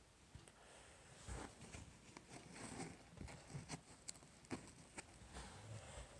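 Near silence with faint handling noise: soft rustles and scattered light clicks as hands move with a large grasshopper.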